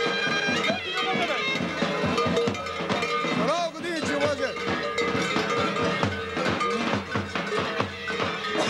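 Bulgarian bagpipe (gaida) playing a folk dance tune over its steady drone, mixed with the clanking of large bells worn by leaping survakari dancers in goat-hair costumes. Voices of the crowd come through in the background.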